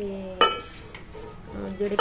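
Steel utensils clanking, with one loud ringing clang about half a second in.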